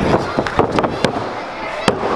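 Several sharp slaps on a wrestling ring's canvas, the loudest near the end, as the referee drops down to count a pinfall. Crowd voices and shouts run through it.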